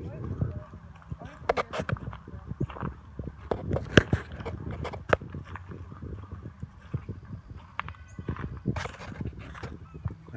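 Footsteps crunching through dry fallen leaves, in irregular steps.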